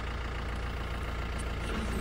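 A vehicle's engine idling, a steady low rumble.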